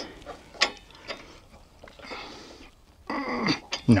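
Scattered metallic clicks and scrapes of a wrench and hands working a long clamp bolt on a metal antenna mounting bracket, with a louder metallic stretch a little after three seconds in. The bolt is cranked down too tight to turn.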